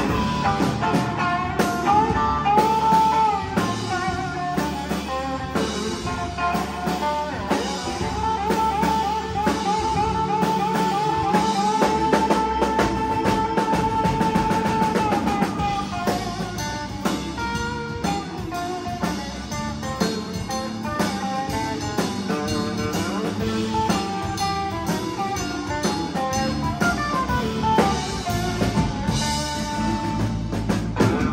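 A live rock band playing an instrumental passage: drum kit with cymbals, electric guitars and bass. Near the middle, one high note is held for several seconds.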